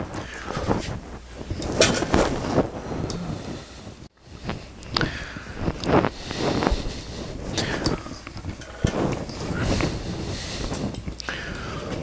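Scattered light clicks and knocks of steel parts being handled during assembly, over a steady low hum. There is a brief dropout about four seconds in.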